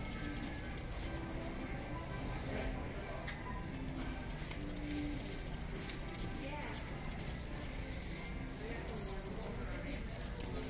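Retail store ambience: indistinct voices of shoppers mixed with background music.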